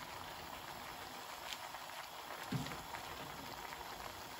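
Faint, steady sizzling and bubbling from a pan of chicken curry with flat beans cooking on a gas stove.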